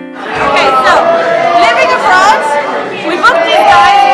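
Many people talking at once in a large hall, with music playing underneath.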